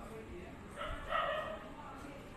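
A short, high-pitched vocal call about a second in, lasting under a second.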